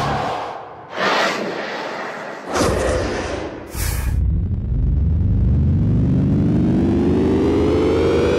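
Cinematic whoosh sound effects from the Hybrid Paragon sample library, several quick swishes one after another. About four seconds in, a synthesized riser starts, its pitch climbing steadily and growing louder.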